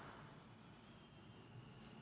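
Very faint scratching of a hand writing cursive on ruled notebook paper.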